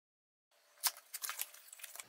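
After a brief dead silence, a cardboard box and its paper manual are handled: one sharp click a little under a second in, then a run of lighter clicks and paper rustles.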